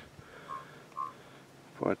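Quiet background with two faint, short peeps about half a second apart, then a spoken word right at the end.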